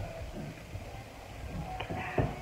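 Quiet room tone with a faint click or two near the end.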